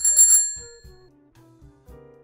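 A bicycle bell rings twice in quick succession, its ring fading within about a second, followed by soft background music.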